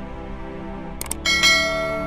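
Background music under an end-screen sound effect: a quick double click about a second in, then a bright bell chime that rings out and fades.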